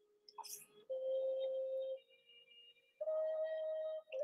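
Two steady electronic tones of about a second each, the second a little higher than the first, with a short soft click just before them.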